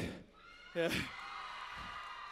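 A short shout with falling pitch just under a second in, then a faint, steady chord of high held tones as the song's intro begins.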